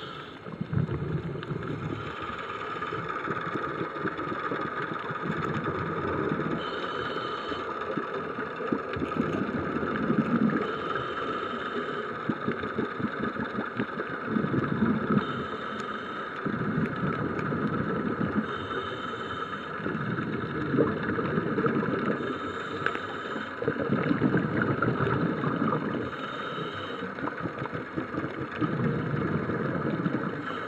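Muffled underwater sound recorded through a submerged camera: a steady rushing wash that swells about every four seconds, with short patches of higher hiss at a similar spacing.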